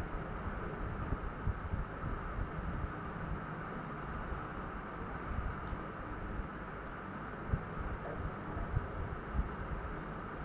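Chicken pieces frying in a thick masala in a pan, a steady sizzle, with irregular low thumps as a spoon stirs them.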